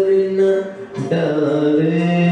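Male voice singing a ghazal in long held notes over a karaoke backing track, with a brief break a little before a second in before the next held note.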